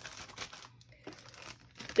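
Clear plastic sticker packaging crinkling as it is handled, in a few faint rustles, most of them in the first half second.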